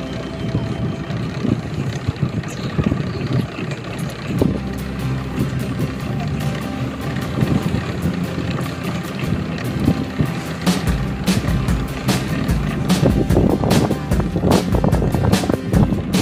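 Fishing boat's engine running steadily, with music playing over it and frequent sharp knocks and clicks.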